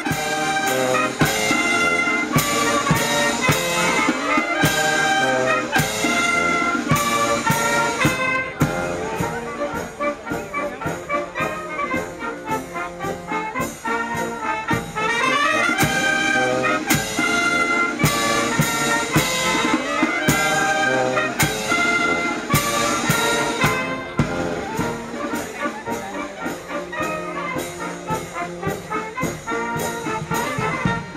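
A miners' wind band of trumpets, tubas and clarinets playing a lively tune with a steady beat.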